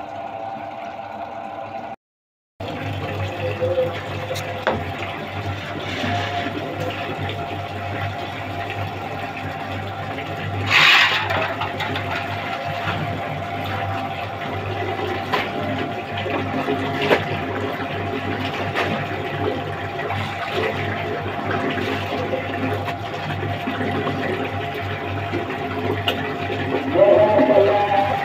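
Steady machine hum over tap water running and clothes being rinsed by hand, with a sharp splash about eleven seconds in.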